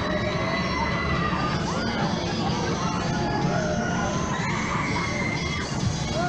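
Riders screaming on a spinning fairground thrill ride: long high screams that rise, hold and fall, one set near the start and another about four and a half seconds in, over a dense steady low fairground din.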